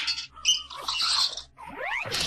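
Effects-processed audio of a Noggin TV logo ident: a quick string of short, squeaky chirp-like sound effects, then two rising whistle-like glides near the end.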